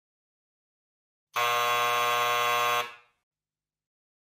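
Electric doorbell buzzing once, a single steady buzz of about a second and a half that starts about a second in and stops with a short tail.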